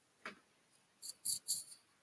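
A quiet pause in room tone, with a few short, faint clicks a little past halfway through.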